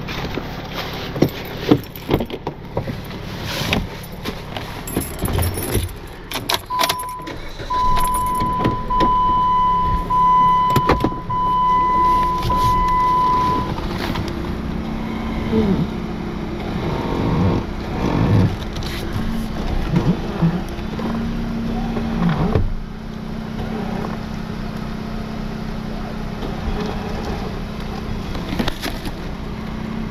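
Recovery winching of a stuck Jeep. In the first half there are scattered clicks and knocks and a steady high chime tone lasting about seven seconds. From about halfway on, a steady low hum of the tow truck's engine and winch runs as the line takes up tension.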